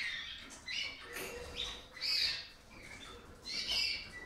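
Caged canaries chirping: a handful of short, high calls in quick succession, with brief pauses between them.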